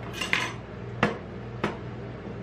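Glass soda bottle and steel spatulas knocking on the stainless-steel plate of a rolled-ice-cream machine: a short clatter, then two sharp knocks about half a second apart, over a steady low hum.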